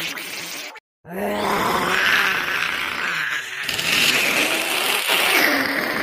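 Goblin voice sound effect: rough, throaty creature groans and grunts, broken by a brief silence just under a second in.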